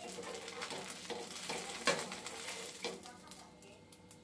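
Spatula scraping and clicking against a hot tawa as a cooked neer dosa is lifted off and folded, over a light sizzle, with a sharp click about two seconds in.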